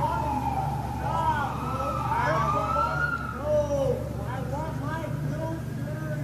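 A siren wailing, sliding down in pitch and then rising again about two seconds in, with people shouting and yelling at each other over it.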